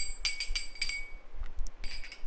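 Small hand cymbals (kartals) struck in a quick run of ringing clashes, the strokes thinning out and stopping about a second in.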